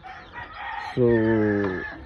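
A rooster crowing, a single drawn-out call that is fainter than the voice and runs under a man's long 'So'.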